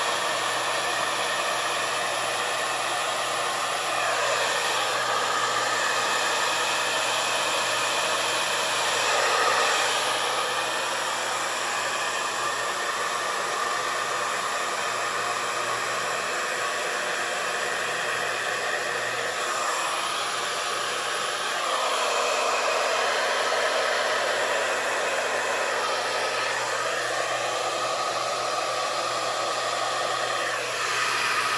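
A handheld hair dryer runs steadily, blowing fluid acrylic paint out across a canvas. Its rushing sound changes in tone several times.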